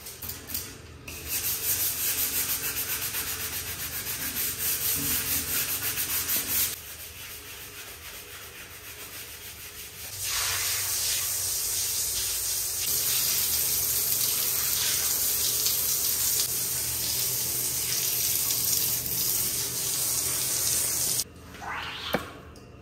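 Water jetting from a hand-held bidet shower onto a tiled bathroom floor, a steady hiss that runs in two long spells and drops back for a few seconds between them, about a third of the way in. The hiss stops shortly before the end.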